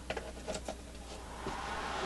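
A few light clicks as a computer power supply's cord is plugged in. About a second and a half in, a steady rushing noise rises as the supply and the car stereo wired to it power on.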